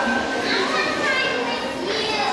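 High-pitched voices chattering and calling over one another.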